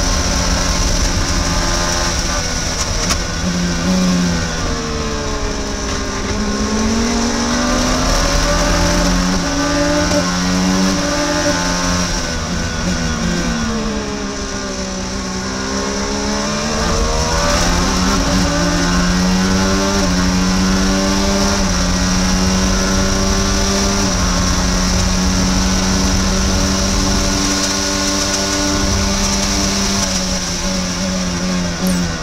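Onboard sound of an IndyCar's Honda 2.2-litre twin-turbo V6 racing on the opening lap. Its pitch falls through downshifts under braking about five seconds in and again around the middle, then climbs in steps through the upshifts on full throttle, with a steady high whine underneath.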